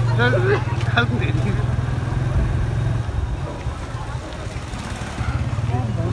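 An engine running with a low, steady pulsing hum that drops somewhat quieter in the middle, with brief voices near the start.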